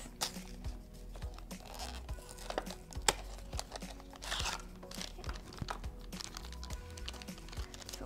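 Hands opening a cardboard box of instant film and drawing out the foil-wrapped film pack: scattered taps and clicks, short cardboard scrapes and crinkles. Quiet background music plays underneath.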